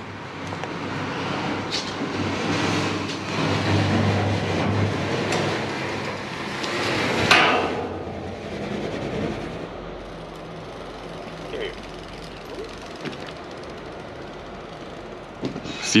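Town street noise: a steady hum of traffic with indistinct voices, and one louder passing swell about seven seconds in.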